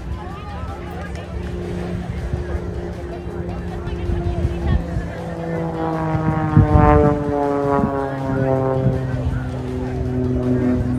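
Aerobatic propeller plane's engine flying past: its buzz grows louder, peaks about seven seconds in and then drops steadily in pitch as the plane passes and climbs away, over the chatter of spectators.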